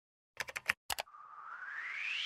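Logo-animation sound effects: a quick run of four clicks, two more just before a second in, then a whoosh that rises steadily in pitch.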